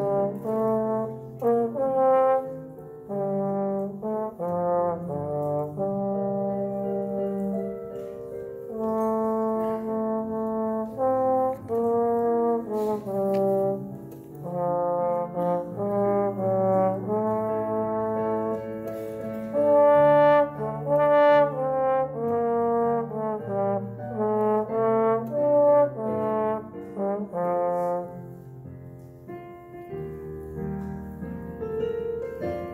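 Trombone playing a slow solo melody in long, connected notes; the melody breaks off near the end and the sound drops to a quieter level.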